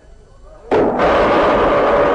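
A sudden loud crash about two-thirds of a second in, from the cartoon's soundtrack. It rings on at full strength and only slowly fades.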